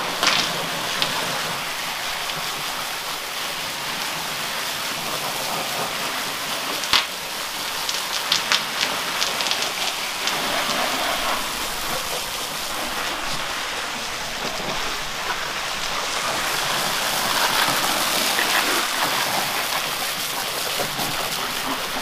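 Garden hose spray nozzle spraying water onto heaps of harvested lettuce and the wet concrete floor, a steady rushing spatter as the soil is rinsed off. A few sharper splashes stand out about seven to nine seconds in.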